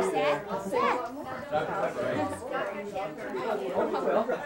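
Several people talking over one another in indistinct chatter.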